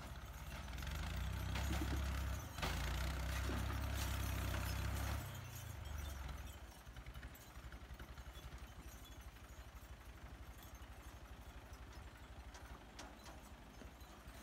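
Farm tractor's diesel engine working hard as it hauls up a steep rocky slope, loud for the first five seconds or so. It then falls back to a quieter, evenly pulsing throb at low throttle.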